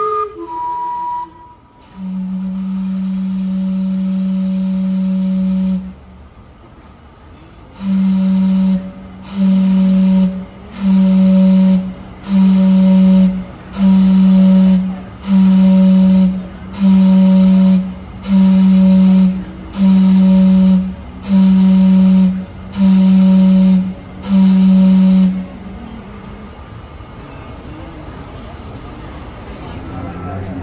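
Gastown Steam Clock's steam whistles: the last notes of its chime tune, then one long low whistle blast, then twelve short blasts about a second and a half apart, each with a rush of steam hiss. The clock is sounding the hour.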